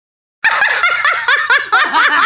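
A brief dead silence, then young women laughing in quick, high-pitched repeated bursts.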